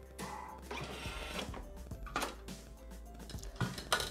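Soft background music over a brief mechanical whirr near the start and a few clicks near the end from a Thermomix TM5 food processor, as its chopping cycle ends and its lid is unlocked and lifted off.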